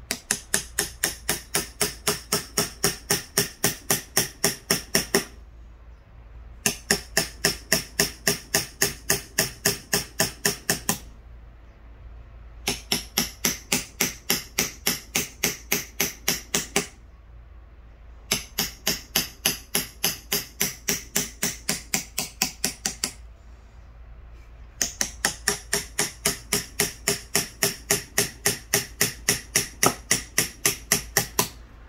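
A claw hammer tapping the back of a carving knife to drive the blade into a wooden board along the outline of a letter. The taps come in quick even runs of about four a second, five runs with short pauses between them.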